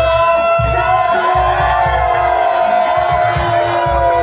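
Reog Ponorogo accompaniment music: a long, wavering high melody line that slides in pitch, carried over repeated low drum strokes.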